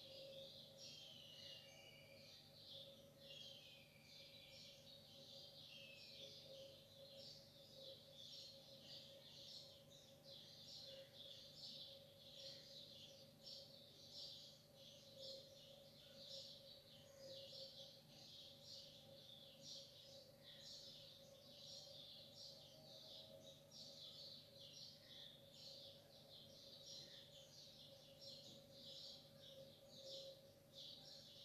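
Faint birds chirping in quick repeated short notes, with a few falling calls in the first seconds, over a steady low hum.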